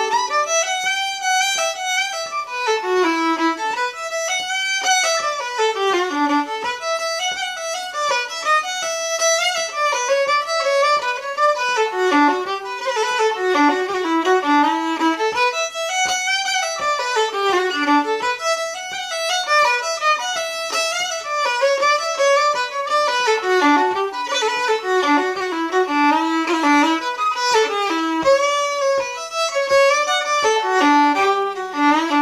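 Solo fiddle playing an Irish reel, a fast, unbroken stream of bowed notes running up and down.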